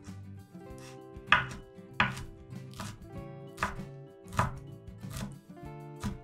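Chef's knife chopping fresh mint leaves on a wooden cutting board: slow single chops, about one every three-quarters of a second, each a short knock of the blade on the board.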